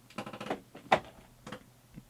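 A quick run of keystrokes on a computer keyboard, then separate clicks, the loudest about a second in and two more near the end.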